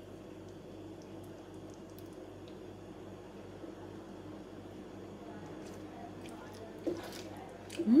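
Thick meat ragù simmering in a wide pan, with faint soft bubbling and small pops over a low steady hum, and a short hum of tasting ("mm") at the very end.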